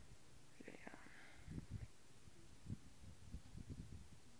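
Near silence on a chairlift ride: faint open-air background with a few soft, short low bumps, and a faint whisper-like sound about a second in.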